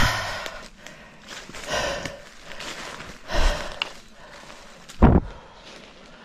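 A man breathing hard from the climb, with a heavy exhale about every one and a half seconds, and footsteps on dry leaf litter; a heavy thump about five seconds in.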